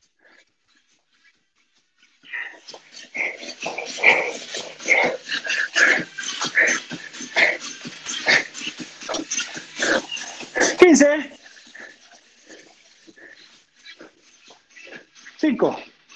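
A man breathing hard during strenuous exercise: a fast run of forceful, noisy puffs of breath that starts about two seconds in and stops about eleven seconds in with a short strained vocal sound.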